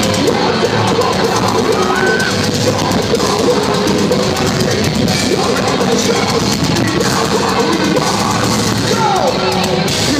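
Metalcore band playing live, loud and steady: electric guitars over a drum kit, heard through a phone's microphone in the crowd.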